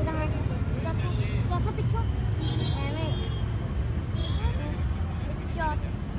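Steady low outdoor rumble like distant traffic, with scattered short voice-like glides over it, faint distant voices or calls.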